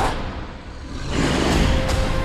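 Film trailer score with heavy low rumble and sound effects. It drops away briefly about half a second in, then swells back up loud from about a second in.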